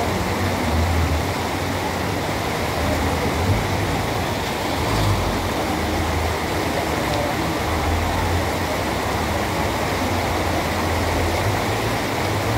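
Floodwater rushing and splashing in a steady torrent as it pours over a kerb ledge into a flooded street, with a low rumble of vehicle engines beneath it.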